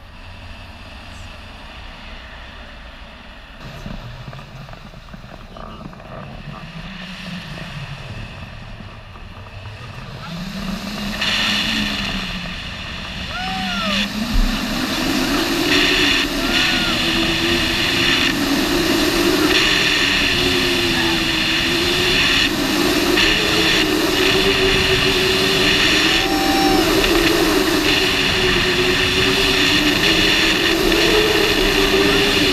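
Wind rushing over the microphone of a tandem paraglider in flight, growing much louder from about ten seconds in as the glider goes into spinning turns. Through it runs a wavering tone that slides up and down in pitch and climbs higher as the spin builds.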